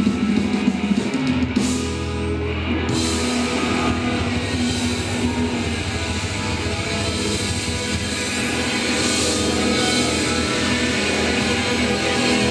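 Live rock band playing: distorted electric guitar over a drum kit, loud and dense, with the cymbal wash dropping out briefly about two seconds in before the full band carries on.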